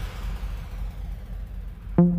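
Quiet break in an electronic trance mix: a fading wash of synth noise, dulling as it dies away, over a low steady rumble, with no beat.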